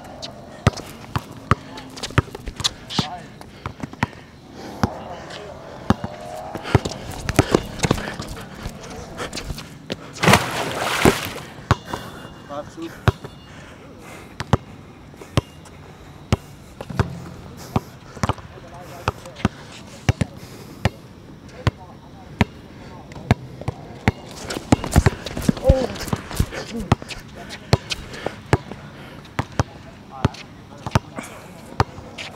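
A basketball is being dribbled on an outdoor hard court: repeated sharp bounces, some in quick runs. A louder clatter lasts about a second and a half, about ten seconds in.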